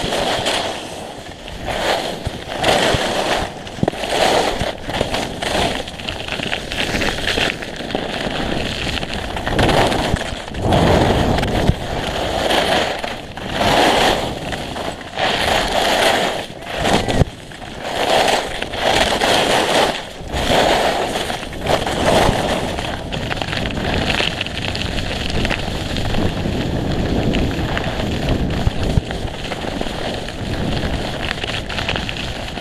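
Skis scraping and hissing over hard-packed snow, swelling every second or two as each turn bites, mixed with wind rushing over the microphone.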